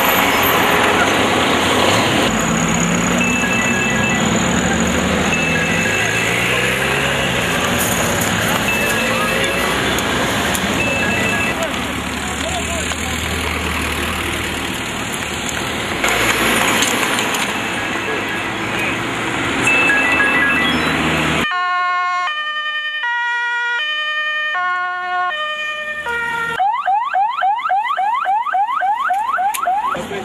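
Roadside noise with traffic and voices, then an electronic siren that cuts in clean about two-thirds of the way through: a run of stepped tones jumping between pitches, then a fast yelp of rising sweeps, about four a second.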